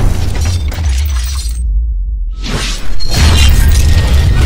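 Cinematic logo-sting sound design: a heavy bass rumble under crackling, shattering effects. Past the middle the high end drops out briefly, then sweeps back in to a loud hit about three seconds in.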